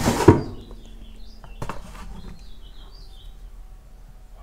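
A hand rubbing along and knocking against the edge of a wooden equipment rack case, with one sharp knock about a third of a second in and a softer one later. Faint bird chirps follow.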